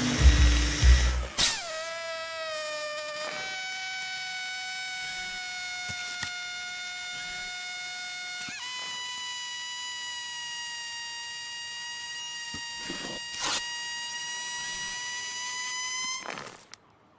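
Air hissing out of a small puncture in an inflatable vinyl robot's arm as a steady high whistle, holding one pitch and stepping up twice, at about three and about nine seconds in. Music with a deep bass plays under the first second or so.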